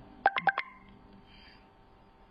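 Four quick electronic beeps heard over a telephone line, like keypad tones, in a recorded phone call.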